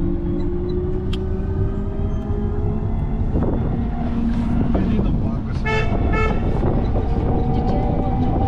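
Cabin noise of a small passenger vehicle driving in city traffic: a steady low rumble with a whine that slowly rises in pitch as it speeds up. A vehicle horn toots twice, quickly, about six seconds in.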